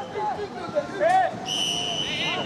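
A referee's whistle blown once: a steady, shrill blast starting about one and a half seconds in, over children and adults shouting on the pitch.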